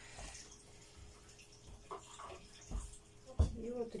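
Scissors cutting through old cloth, with the fabric rustling as it is handled, and a single soft knock about three and a half seconds in.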